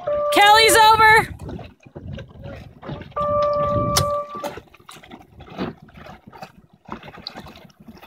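A shout in the first second, then a steady, level horn blast lasting about a second and a half, sounding at a sailing race start. Faint wind and water noise on the microphone fills the gaps.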